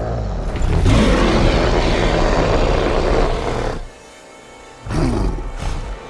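Movie creature roar from a four-armed giant: one long, harsh roar of about three seconds over a rumbling film score. It breaks off about four seconds in, and a shorter growl with music follows near the end.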